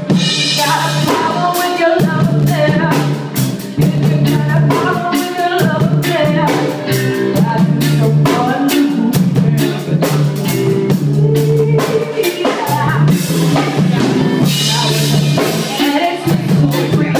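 Live band music: a woman singing over a drum kit played in a steady beat, with electric guitar.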